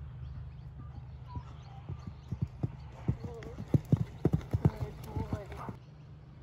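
Hoofbeats of a thoroughbred horse cantering on a sand arena. The strikes are sparse at first, then grow louder and closer together as the horse comes nearer, loudest in the second half.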